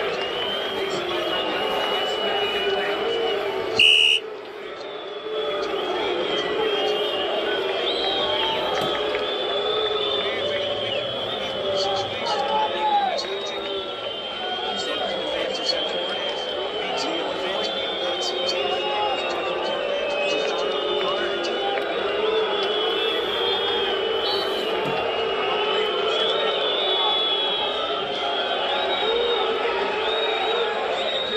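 Continuous voices, a dense steady layer throughout, with one brief loud sharp sound about four seconds in.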